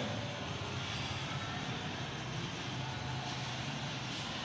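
A steady, even droning background noise, mechanical in character, with no clear strokes or changes.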